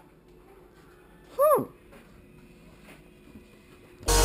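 A single short, loud vocal call about a second and a half in, its pitch rising and then dropping steeply, against faint handling noise.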